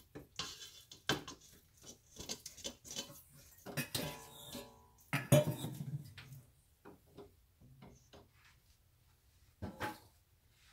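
Clinks and knocks of kitchen utensils against a stainless-steel mixing bowl as ingredients are handled and added; one clink rings briefly about four seconds in and a heavier knock follows about a second later.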